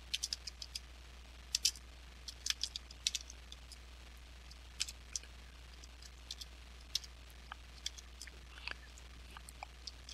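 Computer keyboard being typed on: short, irregular runs of key clicks, some in quick clusters, over a faint steady low hum.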